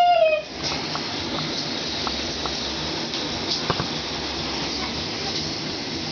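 Shower water running behind a closed bathroom door, a steady hiss with a few faint ticks. A short high sung note sounds right at the start.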